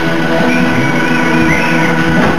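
Live rock band playing loud: electric guitars over drums, with bending guitar notes.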